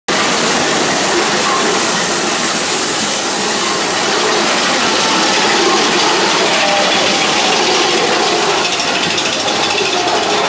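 Mine-train roller coaster car running along its track: a steady, loud mechanical rattle and rush with hiss.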